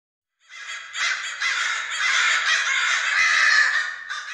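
A flock of crows cawing all at once, a dense overlapping mass of calls that comes in about half a second in, swells about a second in, and starts to fade near the end.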